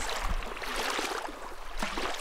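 Small waves washing up on a sandy beach: a steady hiss of surf and water running over sand.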